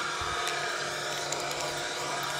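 Steady outdoor background noise with a faint low hum; no pop.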